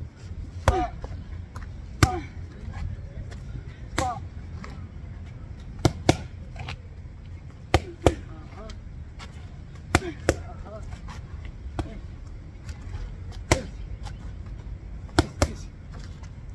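Boxing gloves striking focus mitts: about a dozen sharp smacks, unevenly spaced a second or two apart, some landing in quick pairs as one-two combinations.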